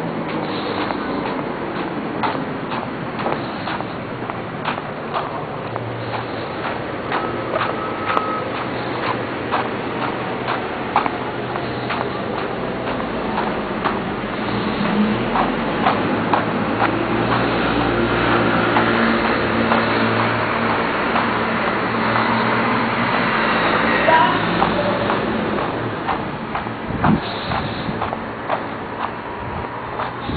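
City street traffic: a steady background of passing vehicles, with a heavier vehicle's engine growing louder and passing through the middle, peaking a little after two-thirds of the way in. Small ticks and knocks come through often.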